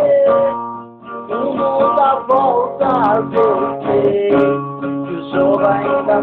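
Acoustic guitar strummed with a man's voice singing over it; the sound dips briefly about a second in, then carries on.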